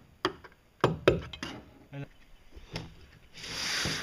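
A hammer striking a paint scraper held against a boat pontoon's hull, chiseling off barnacles: five sharp knocks at uneven spacing. Near the end a steady scratchy rubbing starts, the hull being sanded by hand.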